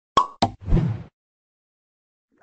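Two sharp pops in quick succession, then a short burst of noise lasting about half a second.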